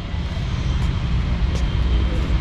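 Steady low rumble of distant engines, with a couple of faint clicks about halfway through.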